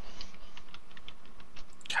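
Typing on a computer keyboard: irregular light key clicks, several a second.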